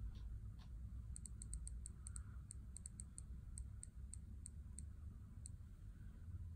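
iPad time-picker wheel ticking as a finger scrolls the alarm minutes: about twenty quick, high clicks, one per minute step, close together at first and then spreading out as the wheel slows. A steady low hum runs underneath.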